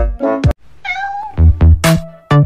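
A single cat meow about a second in, over electronic music with heavy bass beats.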